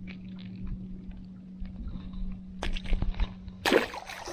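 Handling noises as a small mangrove snapper is unhooked by hand, a few light clicks, then a splash near the end as the fish is tossed back into the water. A steady low hum runs underneath.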